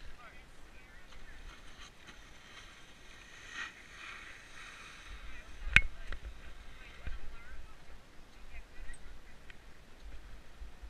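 Skis sliding slowly over packed snow, with wind rumbling on the microphone and faint voices of people nearby. There is one sharp click a little before six seconds in.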